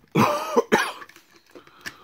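A man coughs: one loud, rough cough starting just after the beginning, ending in a sharp final burst, followed by a few faint clicks from a plastic action figure being handled.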